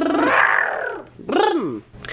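A toddler's voice imitating a truck: a steady, engine-like vocal drone that gives way to a breathy rush, then a short rising-and-falling call.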